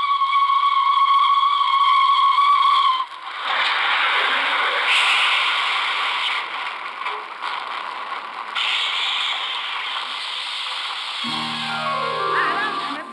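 Steam locomotive whistle held on one steady note, cutting off sharply about three seconds in. It is followed by the continuous rushing and rattling noise of a train running past.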